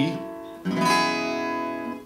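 Acoustic guitar with a capo on the second fret: a D-shape chord strummed once a little over half a second in and left ringing, slowly fading. With the capo, the D shape sounds a whole step higher, as an E major chord.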